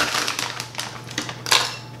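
Frozen blueberries poured from a plastic bag through a plastic funnel into a glass mason jar, clicking and rattling against the glass in a quick, dense patter. The clatter is loudest right at the start and again about a second and a half in.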